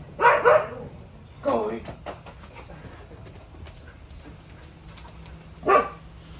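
A husky-type dog barking three times: two close together at the start, the second falling in pitch, and one more near the end.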